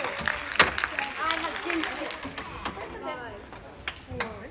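Scattered, fairly faint voices inside an indoor soccer arena, with one sharp knock about half a second in and a few lighter knocks after it.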